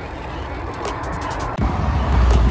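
Road traffic noise and wind on the microphone of a camera carried on a moving bicycle. About one and a half seconds in, the low wind rumble suddenly grows much louder.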